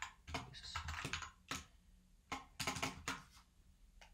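Keystrokes on a computer keyboard in a few short bursts, with brief pauses between them.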